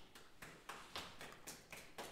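Faint, quick clicks, about four a second, from a man drinking from a 500 ml plastic water bottle.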